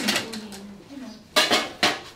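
Metal cooking pots and ladles clanking: one sharp clank at the start and two more about half a second apart near the end, each with a short metallic ring. Voices talk in between.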